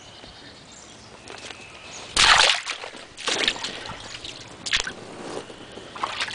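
Shallow creek water sloshing and splashing in three separate bursts. The first, about two seconds in, is the loudest.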